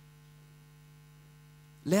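Faint, steady electrical mains hum: a low, even tone with a few fainter higher tones above it. A man's voice starts speaking just before the end.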